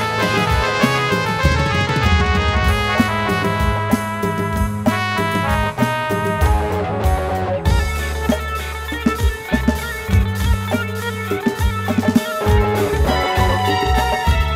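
Live band music: drum kit, electric guitars, bass guitar and keyboards playing together, with a song in an eleven-beat rhythmic cycle. The arrangement changes abruptly about eight seconds in.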